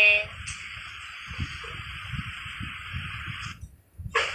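A steady hiss lasting about three seconds that stops abruptly, with faint low rumbling underneath.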